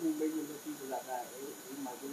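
Quiet, indistinct speech from someone away from the microphones, over a steady background hiss.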